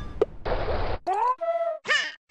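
Short sound-effect samples from a new jazz FX kit previewed one after another in FL Studio's browser. In turn come a tick, a half-second burst of hiss, a quick rising blip, a held tone, and near the end a short falling cry.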